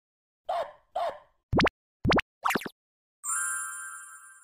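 Cartoon-style logo sound effects: two quick plops, then two fast rising whistle glides and a third wavering one, followed by a sparkling chime about three seconds in that rings on and slowly fades.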